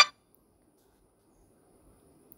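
Near silence: a phone's incoming-call ringtone cuts off suddenly at the very start, leaving only faint hiss and a thin high whine.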